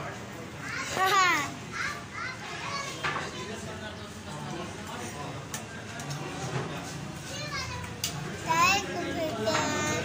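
Young children's voices: high-pitched calls and chatter, with loud swooping squeals about a second in and again near the end, over a steady low background noise.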